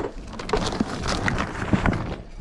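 Rustling and scattered knocks as shoes and a shoebox are handled and stuffed into a full shopping bag.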